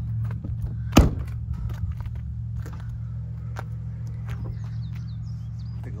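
A car door on a 2007 Lincoln Navigator L slammed shut about a second in, one loud thunk, which retracts the power running boards. A steady low hum and a few light clicks continue behind it.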